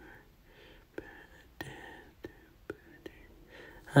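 Faint whispering voice with a few soft clicks, quiet overall.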